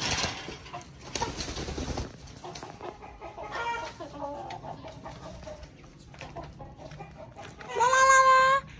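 Backyard chickens clucking, with a few short calls spread through, and a rustling noise in the first two seconds. A louder, held call comes at the very end.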